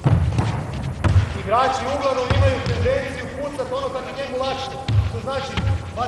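A handball bouncing on a sports hall's wooden floor: several dull thuds at uneven intervals, with wordless voices in the hall from about a second and a half in.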